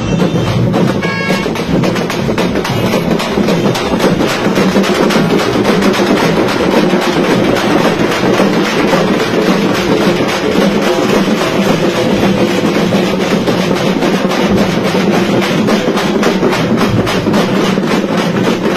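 A Kerala band drum troupe playing large drums with sticks in a fast, dense, unbroken rhythm, loud and close.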